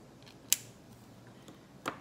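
A single sharp plastic click about half a second in, a felt-tip marker's cap being snapped on, with a smaller click near the end.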